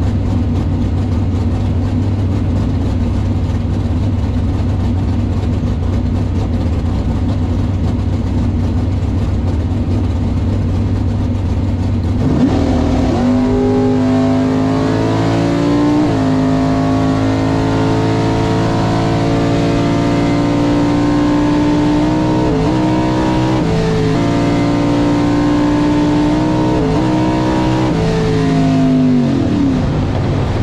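1964 Chevelle drag car's engine heard from inside the cabin: idling steadily, then about twelve seconds in it rises in revs and runs at a held, moderate engine speed for some fifteen seconds, with one sharp step down in pitch and a few short dips, before dropping back to idle near the end.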